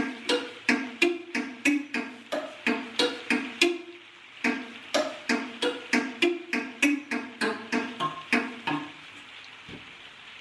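Homemade thumb piano, coffee-stirrer tines clamped under a wooden bar and resting on an aluminium waste paper bin as a sound chamber, plucked by thumb in a simple tune: a run of short twanging notes about three a second, with a brief pause about four seconds in. The instrument is not properly tuned, and the notes stop shortly before the end.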